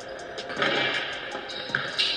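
Background music with a steady beat, growing louder about half a second in.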